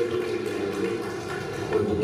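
A man giving a speech into a microphone over a public-address system.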